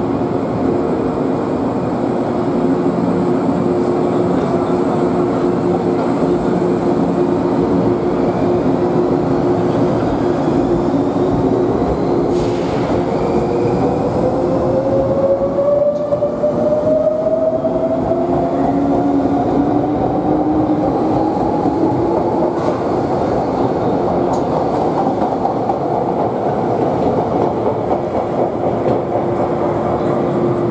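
Izukyu 2100 series electric train pulling out of the station, its cars running past close by. From about ten seconds in, a drive whine climbs steadily in pitch as the train gathers speed.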